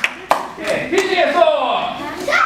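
Applause dying away in two last hand claps, then voices talking.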